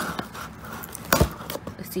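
Scissors working at the packing tape on a cardboard box: a few small clicks, then one sharp snip just over a second in.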